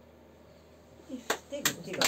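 A second of quiet room tone, then a small group starts applauding a song: separate hand claps begin about a second in, and a voice joins near the end.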